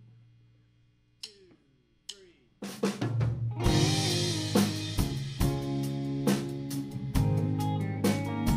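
A live band starts a song after a short quiet gap with two sharp clicks. About two and a half seconds in, drum kit with cymbal, snare and bass drum comes in together with guitar in a steady rhythm.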